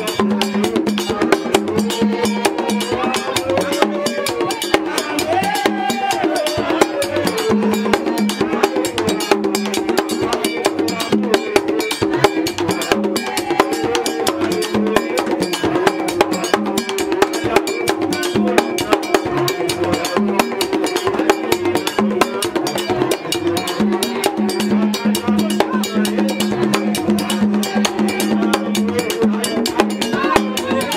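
Haitian Vodou ceremonial music: drums and fast, dense clicking percussion keep up a steady rhythm under a man's lead singing through a microphone.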